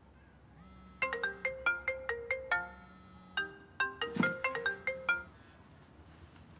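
Mobile phone ringtone: a short, bright melody of quick notes played twice, stopping about five seconds in.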